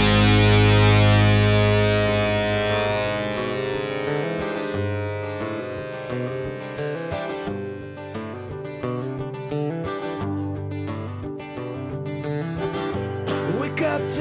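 Background music led by guitar: a loud held chord fades over the first few seconds, then further notes follow in steps.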